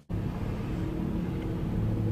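Steady car engine and road noise heard from inside the car's cabin, with a low hum underneath; it starts abruptly at a cut.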